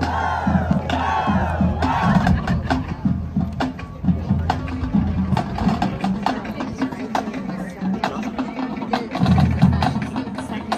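Stadium crowd noise, with a few loud bending shouts or chants in the first couple of seconds and scattered sharp claps or drum taps throughout, over a steady low hum.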